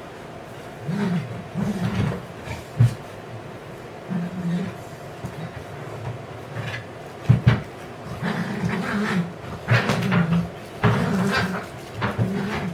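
Dogs barking on and off in short bursts, with sharper single barks about three and seven seconds in.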